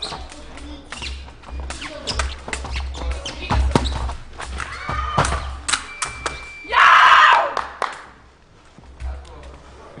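A sabre fencing exchange: quick footwork stamps and blade clicks, then the electric scoring machine's steady beep about six seconds in as a touch registers. The beep is followed at once by a loud, short shout from a fencer, the loudest sound here.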